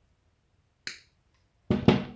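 Side-cutting pliers snipping through fishing line: one sharp click about a second in. A louder short burst follows near the end.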